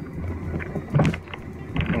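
Car engine running, heard as a low steady hum inside the cabin, with a brief louder sound about halfway through.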